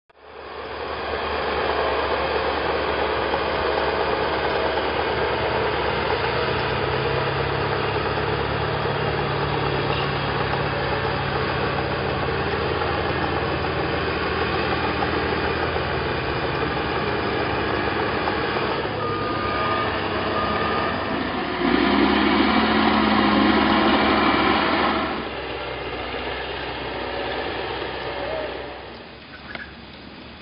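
Heavy earthmoving machine's engine running steadily, a bulldozer working a rubbish landfill. It grows louder with a deeper hum for about three seconds late on, then drops back and fades near the end.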